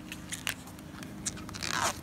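Plasti Dip rubber coating being peeled by hand off a car door, giving short crackles and a louder tearing rip just before the end.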